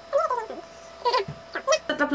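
Short wordless vocal sounds from a woman, three brief murmurs that slide up and down in pitch, with pauses between them.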